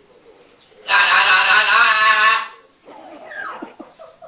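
Green-winged macaw saying 'hallå' (hello) over and over as fast as he can in a light voice, one loud run of about a second and a half, followed by a quieter call that falls in pitch.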